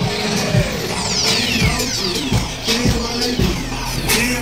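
Music with a heavy, regular bass beat, starting abruptly at the start; a falling whooshing sweep runs through the first couple of seconds.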